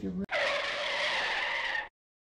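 An edited-in screeching sound effect like tyres skidding to a halt, a steady screech of about a second and a half that starts suddenly and cuts off sharply. It works as a comic "stop, mistake" cue marking a misspoken word.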